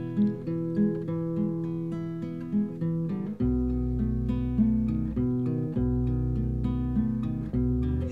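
Acoustic guitar playing a gentle instrumental passage of a soft folk-rock song, with no vocals. Deep bass notes join about three and a half seconds in.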